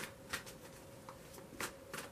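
A deck of tarot cards being shuffled by hand: about four short papery swishes at uneven intervals, over a faint steady hum.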